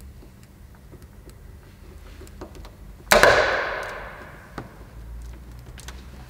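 Light clicks and taps of a plastic car badge being positioned and pressed onto the tailgate, its locating legs pushed into their slots. About three seconds in, a sudden loud burst of sound that dies away over about a second and a half.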